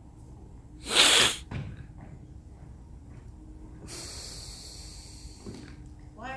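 A loud, short, sneeze-like burst of breath noise about a second in, with a smaller one just after. A steady high hiss follows later.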